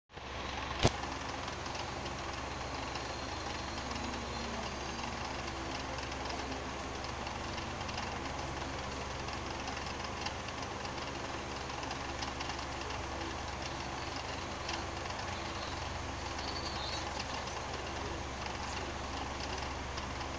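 Animated-film soundtrack playing on a television, picked up by a phone's microphone: a steady rumbling noise with no speech or music. A single sharp knock sounds about a second in.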